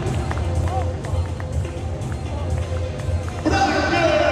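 Voices shouting in celebration over a low rumble, with a short burst of broadcast music cutting in about three and a half seconds in.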